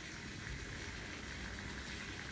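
Faint, steady background noise: a low rumble with a thin hiss above it, and no distinct event.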